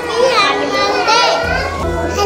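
A young child speaking over background music.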